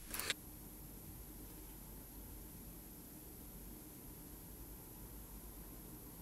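Quiet room tone with a faint steady low hum, and a brief soft noise right at the start.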